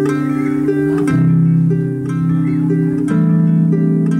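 Live band music, mostly instrumental: a harp plucks a steady run of repeated notes over sustained low chords. The chords change about every second or two.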